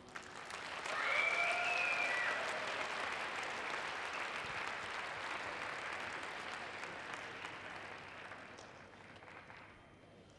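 Arena audience applauding at the end of a figure skating program, with one brief high call rising above the clapping about a second in. The applause swells early and then slowly fades.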